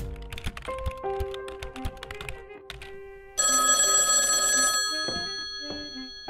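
A telephone bell rings once for a little over a second, about halfway through, the loudest sound here. Around it, sparse pitched music notes sound and fade.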